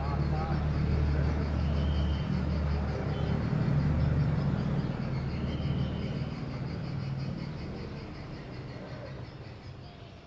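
Outdoor street sound of a vehicle engine's low steady rumble with traffic noise and faint distant voices, fading out over the second half.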